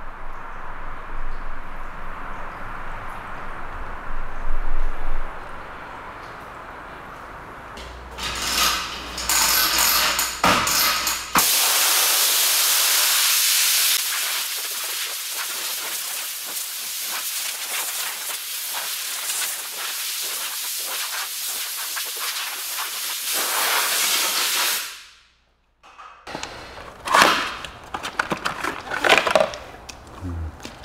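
Compressed-air blow gun blowing water off a wet car's bodywork: a steady hiss that swells loud and bright for about a dozen seconds midway, then fades out.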